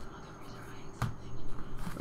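Baseball trading cards handled and slid against each other in the hands, a soft rustle with one sharp click about a second in.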